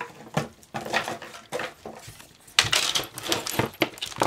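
Craft supplies being handled on a tabletop: light clicks and taps as packs and small items are moved and set down, with the rustle of plastic packaging, busiest in the second half.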